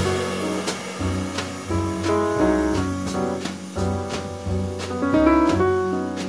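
Live jazz piano trio playing: grand piano chords and melody over walking upright double bass, with the drums keeping steady time in light, evenly spaced strokes.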